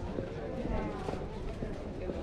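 Pedestrian street ambience: indistinct voices of passers-by talking, over a low steady rumble of the street.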